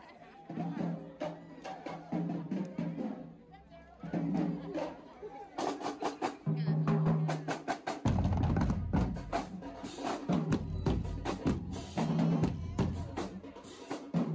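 Marching band drumline playing a fast cadence on marching bass drums and snares, with rapid repeated strokes. It starts softer, and about eight seconds in the full line comes in much louder, with deep bass drum hits.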